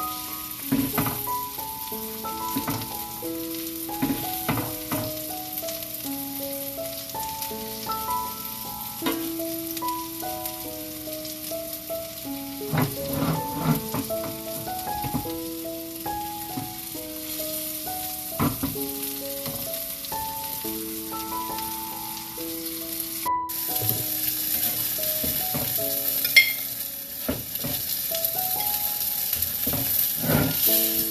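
Chicken cutlets sizzling in hot oil in a cast-iron skillet, with a steady hiss and frequent short clicks and scrapes as a metal spatula turns and lifts the pieces. A melody of held notes plays over it throughout.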